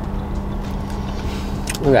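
Steady low hum of a car running, heard from inside its cabin, with a faint tone in it; a voice comes in near the end.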